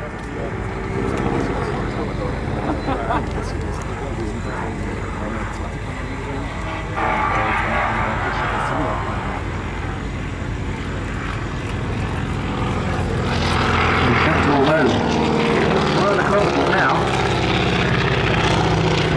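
Boeing P-26 Peashooter's 600-horsepower Pratt & Whitney Wasp radial engine and propeller droning steadily as the aircraft flies a display, growing louder over the last few seconds as it comes closer.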